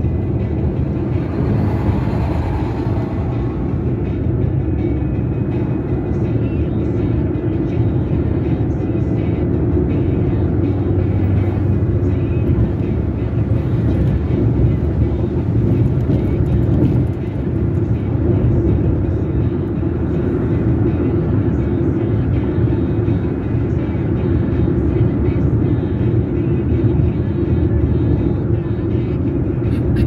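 Car driving on a highway, heard from inside the cabin: a steady low rumble of engine and tyres on the road.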